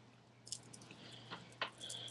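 A few faint, short clicks and light taps as a pair of earrings is handled and picked up.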